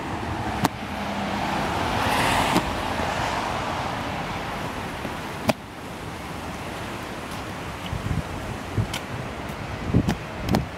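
A car passing on a wet street, its tyre hiss swelling to a peak about two seconds in and then fading slowly. A couple of sharp clicks and a few soft thumps, like footsteps, come through over it.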